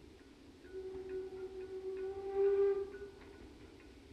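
Steam locomotive whistle blown from inside the tunnel as the train approaches: one long steady note, starting just under a second in, swelling near its end and stopping about three seconds in.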